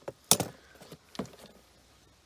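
A few short clicks and knocks of things being handled on a wooden bench, the loudest about a third of a second in and another a little over a second in.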